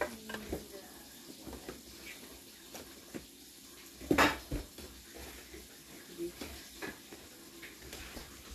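Scattered light clicks and knocks of hard objects being handled, with one louder clatter about four seconds in.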